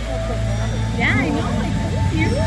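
Voices over a steady deep rumble, with a rising-and-falling voice about a second in.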